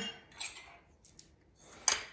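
Metal measuring cup scooping sugar from a glass canister: a few light scrapes and clicks, then one louder clink of metal against glass near the end.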